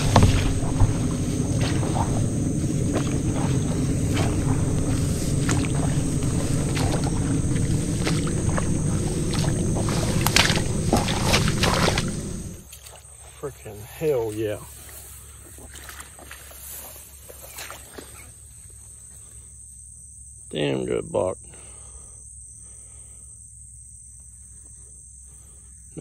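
Footsteps and rustling as someone pushes through tall grass and brush for about the first twelve seconds; then it drops much quieter, with two short voiced exclamations from a man about two and eight seconds later.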